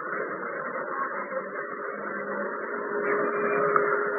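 Steady, muffled background noise with no treble, typical of a low-fidelity sermon recording in a pause between phrases. A faint steady hum joins it for the last second or so.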